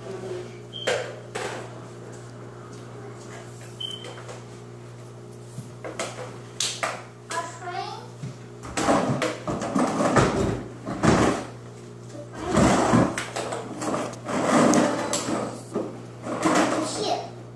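A young child shouting and squealing, mixed with a plastic baby walker's wheels rattling over a tile floor as it is pushed. The sound comes in loud bursts through the second half, over a steady low hum.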